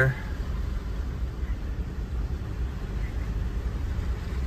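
Steady low rumble of a vehicle's engine and tyres heard from inside the cabin while it moves along the road.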